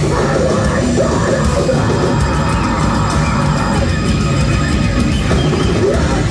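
Live metalcore band playing loudly: distorted electric guitar, drums and violin in a dense, unbroken wall of sound.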